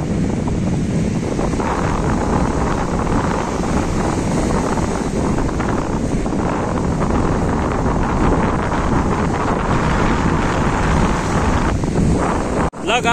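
Wind buffeting the microphone in a steady rush, over waves breaking on the shore.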